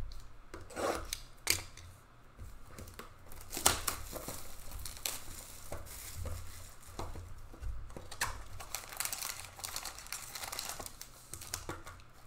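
Plastic wrapping on trading-card packaging torn and crinkled by hand, with irregular crackles and rustles and a sharp crackle about three and a half seconds in.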